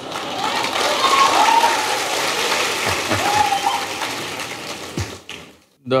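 Audience applauding, building over the first second or so and dying away about five seconds in, with a few voices heard over the clapping.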